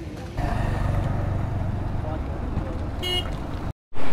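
A road vehicle's engine running close by, with a short horn toot about three seconds in; the sound cuts off suddenly just before the end.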